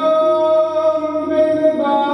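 Devotional hymn singing (Sikh kirtan) with instrumental accompaniment, one long held note changing to a new pitch near the end.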